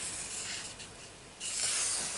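A paper page of a colouring book being lifted and turned, rustling and sliding against the facing page, with a louder swish about one and a half seconds in.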